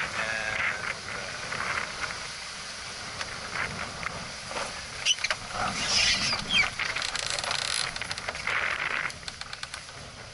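Wind buffeting the microphone and water rushing past the hull of a small sailing yacht, with a cluster of knocks and splashy noise in the middle.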